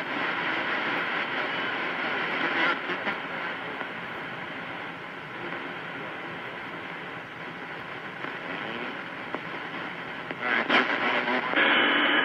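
Static and band noise hissing from a CB radio receiver on an open channel between transmissions. Near the end there are a few crackles, then the hiss changes and jumps up as another station keys up its transmitter.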